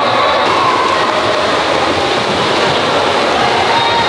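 Steady, loud wash of water noise and splashing echoing in an indoor swimming pool, with faint voices under it.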